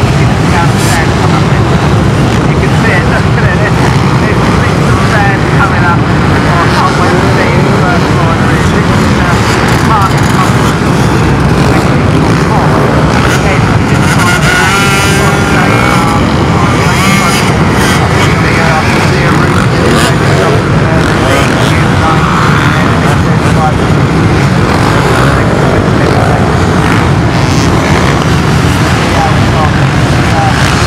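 Massed off-road motorcycle engines, many dirt bikes running at once in a loud, continuous drone. About midway, one nearer bike's engine stands out for a couple of seconds as it climbs a dune.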